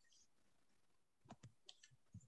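Near silence, with a few faint computer clicks in quick succession past the midpoint, from a mouse or keyboard on a video call.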